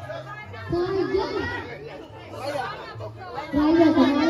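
People talking and chattering together, with a woman's voice over a microphone standing out about a second in and again near the end.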